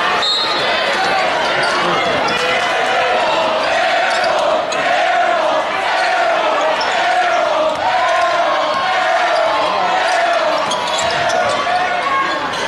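Live high school basketball game echoing in a gymnasium: the ball dribbling and sneakers squeaking on the hardwood floor, under the voices of the crowd.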